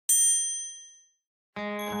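A single bright chime or ding, struck once and ringing out high for about a second as it fades. Background music starts about one and a half seconds in.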